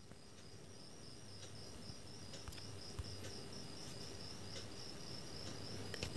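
Faint background with a quiet high-pitched chirping that repeats about four times a second, over a low steady hum and a couple of soft clicks near the middle.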